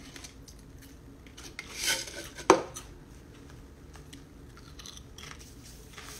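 Pringles can being handled: a short scraping rustle about two seconds in, then a single sharp click.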